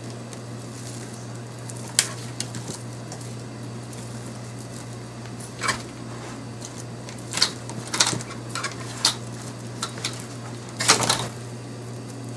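Dry twigs rustling and crackling against each other as twine is wound tightly around a bundled broom head. There are scattered sharp clicks and snaps, the loudest cluster near the end, over a low steady hum.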